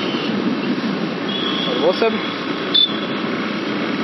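Steady riding noise from a Yamaha FZ V3 motorcycle on the move: wind rushing over the rider-mounted microphone, with the 149 cc single-cylinder engine running underneath. A thin high tone comes in briefly around the middle.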